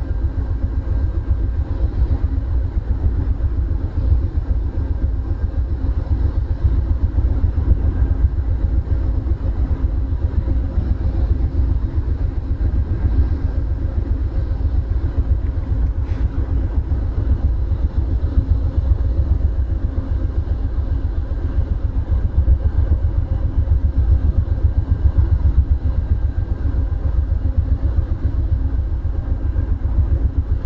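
Stopped Amtrak California Zephyr train idling: a steady low rumble with a faint hum.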